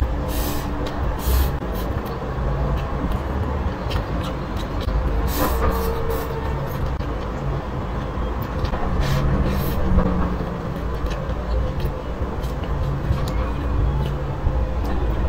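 Close-miked chewing of a mouthful of rice, with short wet mouth clicks and smacks, over a steady low rumble.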